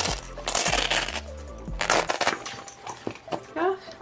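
Rustling and shifting of a faux-fur bag packed with charms, keychains and pins as it is handled, with light clinks of the metal hardware. Two main bursts: one in the first second and another about two seconds in.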